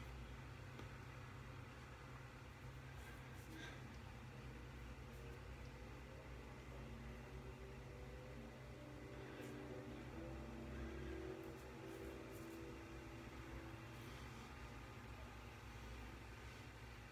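Quiet room tone with a steady low hum, and faint soft rubbing with a few light ticks as an alum block is rubbed over freshly shaved wet skin.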